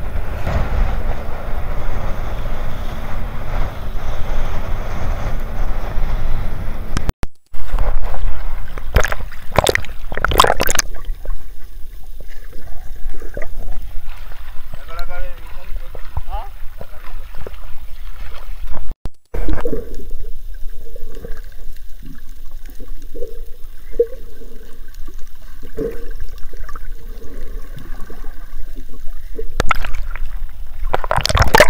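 A small wooden fishing boat's motor running, with wind and spray, for the first few seconds. Then water splashing and sloshing around a camera held at the surface among waves, with several loud splashes about ten seconds in and gurgling as the camera dips in and out of the water.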